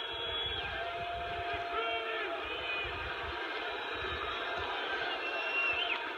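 Large ballpark crowd cheering steadily, a dense wash of many voices.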